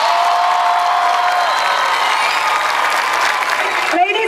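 Stadium crowd applauding and cheering at the close of a marching band's show, while a held note dies away about a second and a half in.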